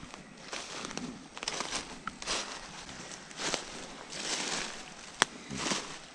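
Footsteps crunching through thick dry leaf litter at a walking pace, with a sharp click about five seconds in.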